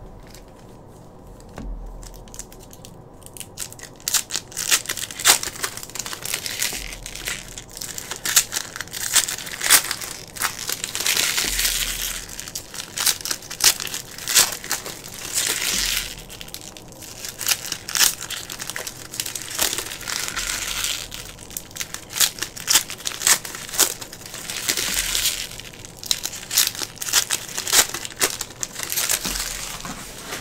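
Foil trading-card pack wrappers crinkling and tearing as packs are ripped open, with cards being handled. The crackly rustling starts a few seconds in and comes in uneven bursts with sharp clicks.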